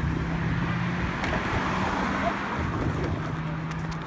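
Road traffic at a level crossing: a car's steady low engine hum with tyre noise that swells in the middle and slowly fades.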